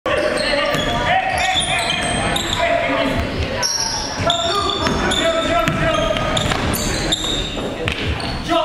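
Basketball being dribbled on a gym floor, with short high sneaker squeaks and players' voices, echoing in a large gym.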